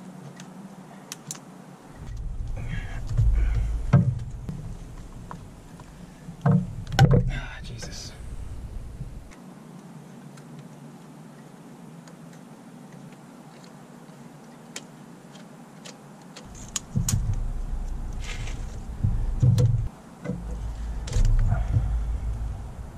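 Hands working rubber vacuum hoses and clamps off a car engine's intake manifold: scattered clicks and knocks of hose and fittings. A low rumble comes and goes in two long stretches and breaks off sharply between them.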